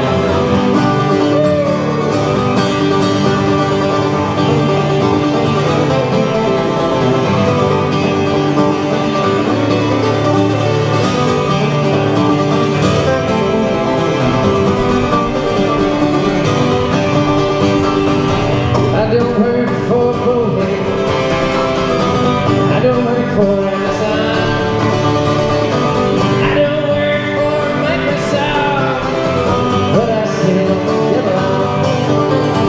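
Two acoustic guitars playing a country-folk song together, with a man's voice singing near the end.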